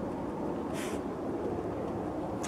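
Steady low background rumble, with one short breathy hiss a little under a second in.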